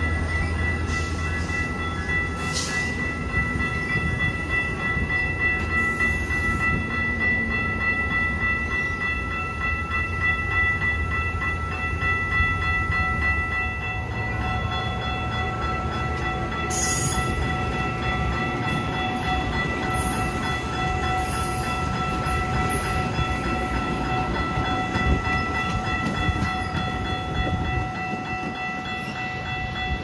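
Metra bilevel commuter cars rolling past and pulling away, a low rumble that eases as the train draws off, with steady high-pitched tones held throughout.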